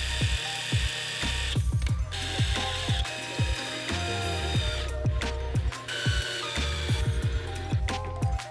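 A cordless DeWalt drill driving screws in short bursts, its motor whine and clutch ratcheting under background music with a steady beat.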